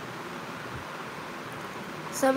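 Steady, even background hiss of room noise with no distinct sounds.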